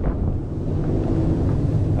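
Steady low rumble of a ship's engine-room ventilation air blower, the only machine running while the engines and generators are shut down.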